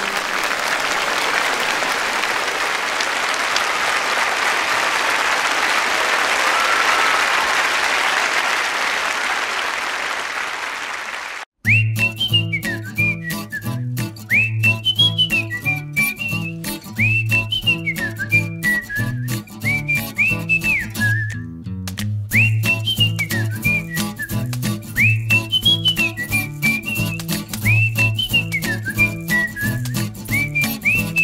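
Audience applauding after a song, swelling and then fading over about eleven seconds. It cuts off abruptly and a looping upbeat tune starts, with a whistle-like melody over bass and chords.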